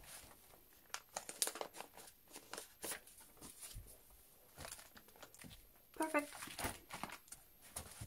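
Clear plastic binder sleeve crinkling and rustling as a photocard is slid into its pocket and the pages are handled, a run of soft crackles and light clicks. Near the end the binder is closed and picked up.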